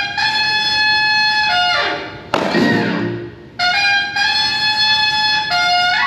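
A trumpet-like brass horn plays a repeated phrase: a long held note that steps in pitch and ends in a falling smear, twice, each time answered by a few drum hits, in a New Orleans second-line style.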